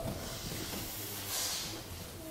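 Soft room noise with a faint hissing rustle that swells briefly about one and a half seconds in.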